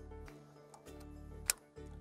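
A single sharp click about one and a half seconds in: the breakaway pin snapping home in the camper trailer's electric-brake breakaway switch, which switches the brakes back off. Quiet background music runs underneath.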